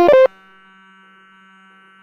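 Circuit-bent speech synthesizer circuit from a VTech My First Talking Computer: a brief loud burst of glitchy electronic tones stepping up in pitch, cut off about a quarter-second in, then a faint steady electronic buzz.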